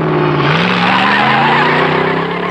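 A car pulling away fast: the engine revs climb steadily while the tyres squeal.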